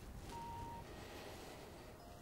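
Quiet outdoor background: a faint low rumble, with a short, faint steady tone lasting about half a second near the start.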